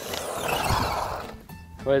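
Arrma Fury brushed 2WD RC short-course truck running flat out on a 2S LiPo and passing close by. Its motor and tyre noise swells and fades within about a second and a half.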